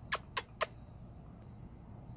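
Small parrots, parrotlets, giving three short, sharp chirps in quick succession about a quarter second apart, followed by faint, soft high chatter.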